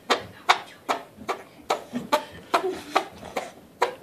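A child's armpit farts, made by pumping his arm against a hand cupped in the armpit: a steady run of about ten short pops, two or three a second.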